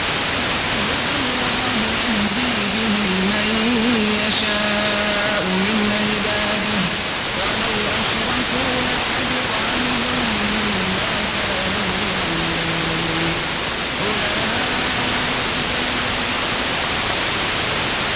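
Heavy FM static from a weak long-distance signal received by sporadic-E skip on 90.5 MHz, with a man's voice faintly reciting the Quran in long, wavering melodic phrases beneath the hiss, from Egypt's ERTU Quran Radio.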